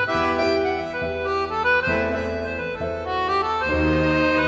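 Tango-orchestra music with an accordion playing a melody in held notes over a bass line.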